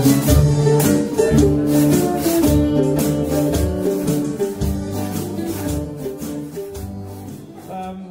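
Live jug band playing an instrumental passage: acoustic guitar and mandolin strumming over low bass notes, with a washboard scraped in a steady beat. The music tails off near the end as the tune finishes.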